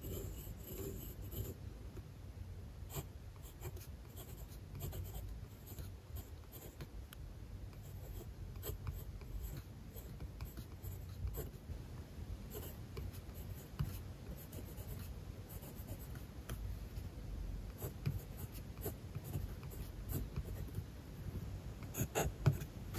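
Kaweco Special mechanical pencil writing on spiral-bound pad paper: the graphite lead scratches quietly across the sheet in many short strokes as it draws loops and letters.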